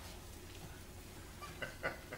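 Quiet room tone in a lecture hall, with a steady low hum. Two brief faint sounds come near the end.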